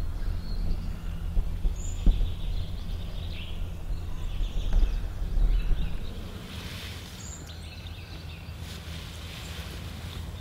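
Woodland ambience with a steady low hum and rumble that eases off after about six seconds. Two faint, brief bird chirps come about two seconds in and again near seven seconds, and there is a single click at about two seconds.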